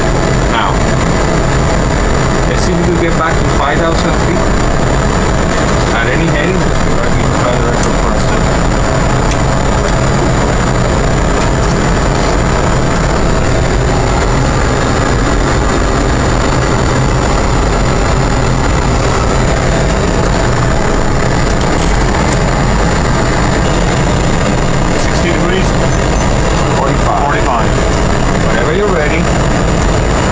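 Steady, loud rumble and hiss of a Boeing 777 flight simulator's cockpit sound, its reproduced engine and airflow noise running unchanged throughout, with faint voices at times.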